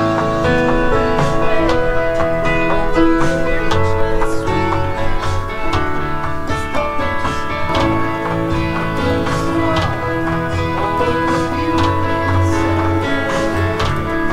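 A pop song's backing track plays, with electric guitars and a rhythmic beat, while a stage keyboard's piano sound plays the song's opening melody over it and a pad holds chords underneath.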